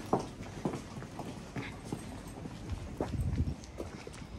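Footsteps of a few people walking on brick paving, hard soles tapping irregularly about twice a second.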